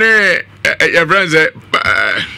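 A man speaking, opening with one long drawn-out syllable that rises and falls in pitch, then shorter broken syllables.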